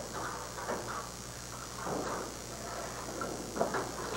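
Quiet bowling-alley background: a steady low hum under faint, indistinct murmur, with no clear single event.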